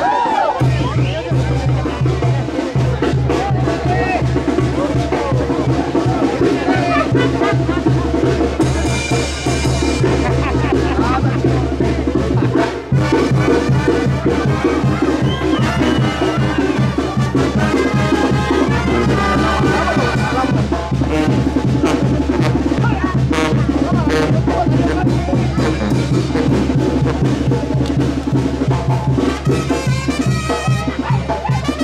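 Live brass band music, with tuba bass and drums keeping a steady beat, over crowd voices.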